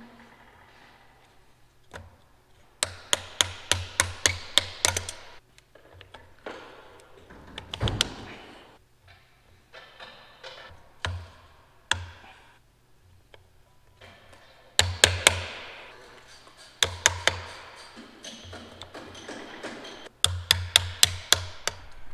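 A hand tool clicking in quick bursts, about four or five sharp clicks a second, as hose fittings on a planter's row manifold are worked. There is one long run of about ten clicks early on and three shorter runs near the end, with a few lone knocks between them.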